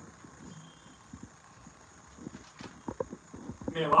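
Scattered soft, irregular knocks of an actor's steps and long staff on a stage floor; a man's voice begins near the end.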